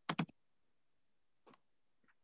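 Quick clicks at a computer: a double click near the start, then a single fainter click about a second and a half in.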